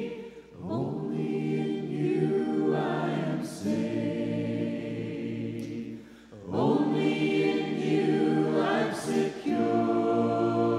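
Church congregation singing an invitation hymn a cappella in parts, unaccompanied voices holding long notes, with brief breaks between phrases about half a second and six seconds in.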